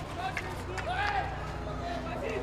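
Stadium ambience at a field hockey match: a steady low crowd rumble, a voice calling out briefly about a second in, and a couple of faint knocks.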